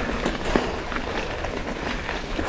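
Mountain bike rolling over a rough dirt trail: tyre noise and a steady patter of small rattles and knocks from the bike, with wind rumble on the microphone.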